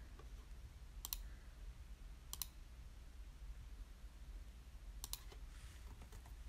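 Quiet room tone with a low hum, broken by three brief, sharp clicks, each one doubled, about one, two and a half, and five seconds in.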